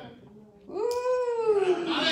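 A single long, high-pitched vocal exclamation from a person's voice, starting about halfway through, rising briefly and then gliding slowly down over about a second.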